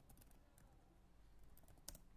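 Faint typing on a computer keyboard: a few scattered keystrokes, with a short run of louder ones near the end.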